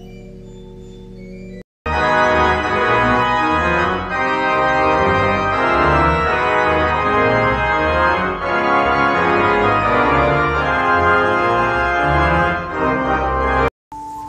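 Church pipe organ playing. A soft held chord is cut off suddenly, and after a brief silent break comes loud full organ: many sustained pipes sounding together over a changing bass line. It ends in another abrupt cut.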